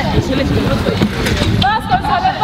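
Children's voices shouting and calling to each other during a football game, loudest near the end, over a steady low rumble.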